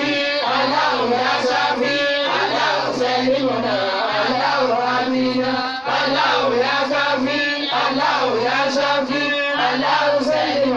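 A man's voice chanting a prayer into a microphone in long, melodic phrases, the pitch stepping up and down, with a brief break just before the middle.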